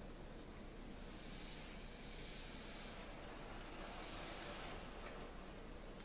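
A person blowing a steady breath across wet acrylic paint to push a small drop of white paint outward. It is a soft, faint airy hiss that starts about a second in and lasts about three and a half seconds.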